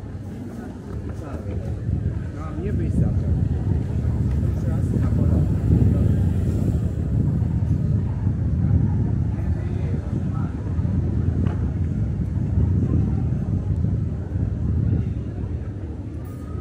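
Low, uneven rumble of wind buffeting the microphone during a walk down a pedestrian street, swelling about two seconds in and easing near the end, with passers-by talking.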